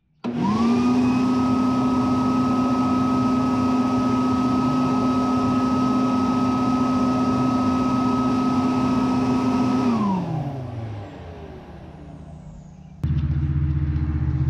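Homemade flow bench's motor starting with a quick rising whine, running at one steady high pitch for about ten seconds while pulling air through the bench, then switched off and winding down. Near the end a different steady low hum starts.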